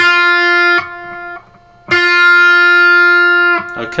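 Electric guitar playing two single notes at the same pitch on the B string: first the sixth-fret target note, then the fifth-fret note pre-bent a half step before it is picked, matching the target. The first note rings under a second and the second about a second and a half, each cut off sharply.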